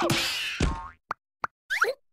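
Cartoon slapstick sound effects: a falling boing, then two short sharp pops, then a brief squeaky gliding cry near the end.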